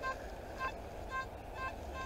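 Nokta Makro Simplex+ metal detector giving short, evenly spaced target beeps, about two a second, as the coil is swept back and forth over a buried metal target.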